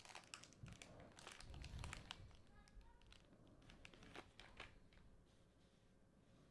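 Faint crinkling and small clicks of a foil trading-card pack being torn open and handled, dying away about five seconds in.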